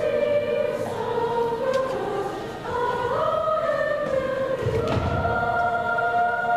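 Middle school choir singing in unison and harmony, holding and moving between sustained notes, with a brief low thump about five seconds in.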